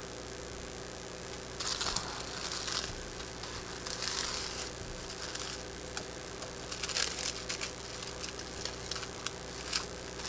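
Paper quilt pattern rustling and crinkling in short bursts as hands smooth it flat and pin it over fabric, with a steady low hum underneath.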